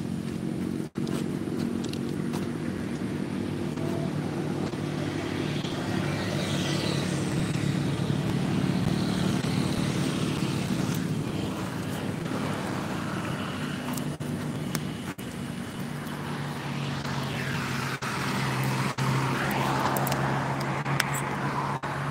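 An engine running steadily with a low hum, with rustling from the phone being handled, cut by a few brief dropouts.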